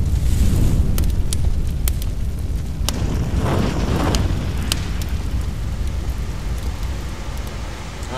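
Fire sound effect: a deep steady rumble with scattered sharp crackles and a whoosh that swells about three and a half seconds in, fading slightly toward the end.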